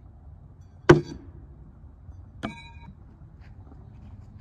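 A thrown stainless steel throwing knife hits the target with one sharp knock about a second in, then bounces back and strikes again about a second and a half later with a short metallic ring.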